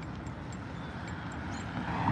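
Road traffic from a multi-lane road, a steady rumble, with a vehicle growing louder near the end as it approaches.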